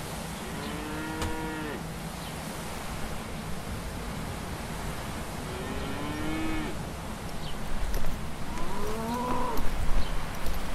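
Cattle mooing: three drawn-out calls of about a second each, near the start, around the middle and near the end, the last one rising in pitch, over a steady low background rumble.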